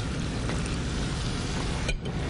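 A steady low rumbling noise with a faint hiss over it and no distinct events.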